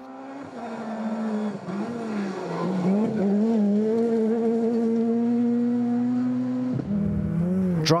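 Ford Fiesta R2 rally car's four-cylinder engine at high revs. It grows louder over the first few seconds as the car comes closer, with the pitch wavering under throttle changes, then holds a steady high note. Near the end the engine note drops suddenly.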